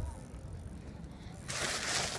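Tyres of a very small bike rolling up on a gritty path and stopping close by: low rumble at first, then a loud hiss about one and a half seconds in as it comes to a stop.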